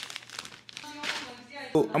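Clear plastic poly bag crinkling as hands open it and pull out a pair of pants, a run of short crackles.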